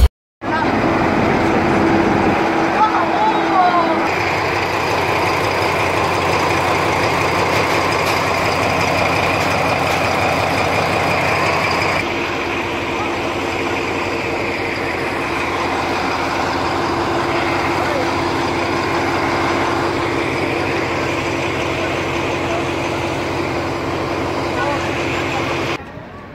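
Heavy diesel engine idling steadily, consistent with the stopped freight train's diesel-electric locomotive, under the talk of a crowd of onlookers.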